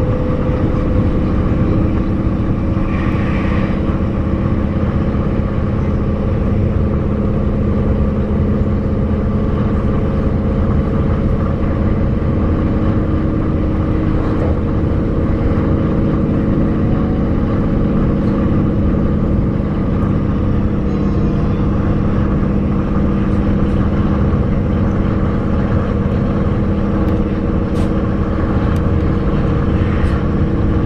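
A passenger train running at speed, heard from inside the carriage: a steady rumble of wheels on track with a constant low hum.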